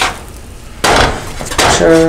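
A spatula clatters and scrapes against a nonstick griddle pan for just under a second while a grilled cheese sandwich is lifted and stacked. A man's drawn-out voiced "ah" follows near the end.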